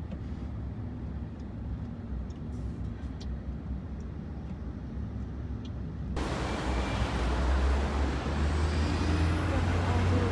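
Steady low road and engine rumble heard from inside a moving car, with a few faint clicks. About six seconds in it cuts abruptly to louder open-air city street noise: traffic hiss over a strong low rumble.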